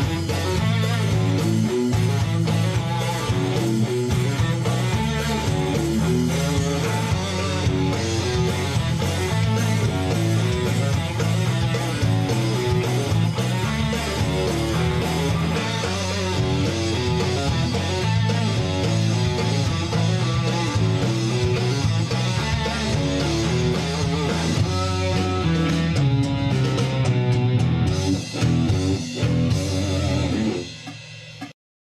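Rock music led by electric guitar over a steady, repeating bass line, playing continuously at full volume.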